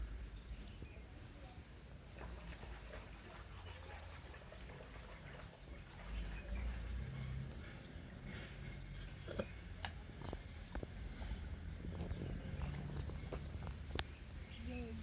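Faint scraping and small clicks of knives peeling Irish potatoes by hand, over a steady low rumble, with a couple of sharper clicks a little past the middle.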